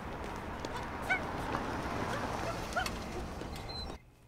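Steady outdoor background noise with two short, pitched animal calls, one about a second in and one near three seconds, each rising and falling; they are most likely distant dog barks.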